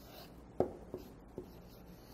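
Marker pen writing on flip-chart paper: faint strokes broken by three sharp taps, about half a second, one second and one and a half seconds in.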